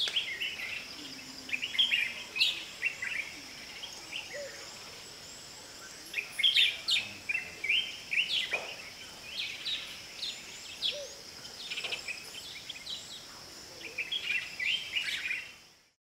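Wild birds chirping and calling in short, scattered phrases over a steady high-pitched drone, likely insects; the ambience fades out near the end.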